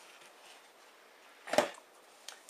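Mostly quiet, with a single short thump about one and a half seconds in as the foil pan of cake batter is knocked on the counter to settle the batter.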